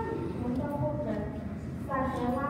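A young girl speaking into a lectern microphone.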